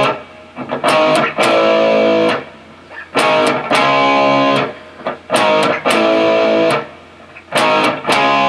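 Ibanez electric guitar playing a power-chord riff. Each chord is struck, and the pattern is a quick stab followed by a chord held for about a second. The held chord is then cut off sharply by a hand mute, and the pattern repeats about every two seconds.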